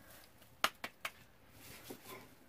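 Hands working masa dough on a plastic sheet: three quick, sharp clicks a little over half a second in, the first the loudest, then a soft rustle near the end.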